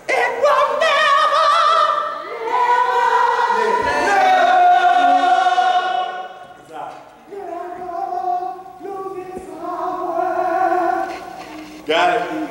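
Choir singing a cappella in long held notes. The singing dips briefly about six seconds in, then resumes.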